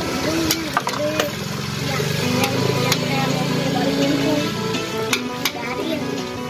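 Electronic game music from a claw machine, with voices in the background and a few sharp clicks.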